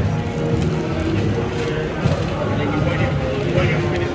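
Background music and the chatter of other people in a busy food hall, a steady mix with no single sound standing out.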